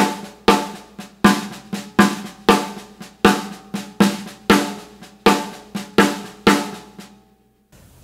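Snare drum played with sticks in a paradiddle, every right-hand stroke accented and every left-hand stroke a soft ghost note. This gives an uneven pattern of loud hits with quiet taps between. The playing stops a little before the end.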